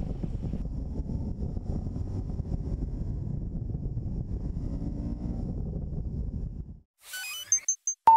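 Motorcycle engine running with wind noise on an onboard camera as the bike rides slowly, a steady low rumble that cuts off about seven seconds in. A short electronic logo jingle with quick beeps follows near the end.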